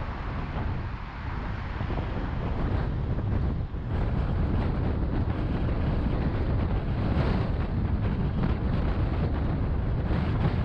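Road and wind noise from a car cruising on a freeway, with wind rumbling on the microphone; it gets a little louder about four seconds in.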